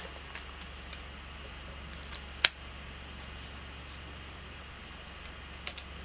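Light taps and clicks of metal tweezers placing a paper sticker onto a planner page, with one sharper click about two and a half seconds in and a few small ticks near the end, over a low steady hum.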